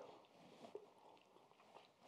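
Near silence with faint chewing: a few soft mouth clicks as a mouthful of food is chewed, about half a second in and again near the end.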